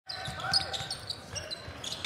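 A basketball being dribbled on a hardwood court, with repeated low bounces, and faint voices in the arena.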